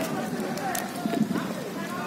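People's voices talking and calling out, with scattered sharp clicks and knocks.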